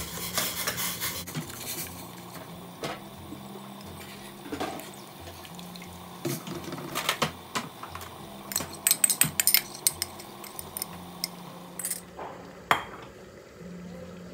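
A whisk stirring thickening fruit sauce in a stainless steel pot, with pouring and stirring at first and then scattered clicks and knocks of the whisk and bowl against the pot, loudest in a quick run of clicks about nine seconds in.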